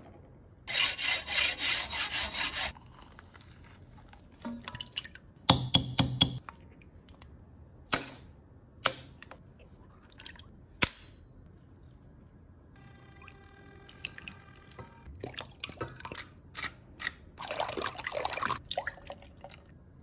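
Eggs being cracked and emptied into a stainless-steel bowl: sharp shell cracks and taps through the middle, with liquid egg pouring and dripping. A rapid rattling burst of about four strokes a second comes in the first couple of seconds, and a thin steady squeaky tone sounds briefly past the middle.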